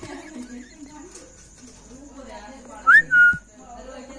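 A short, loud two-part whistle about three seconds in, a quick rising note followed by a briefly held lower one, over faint background voices.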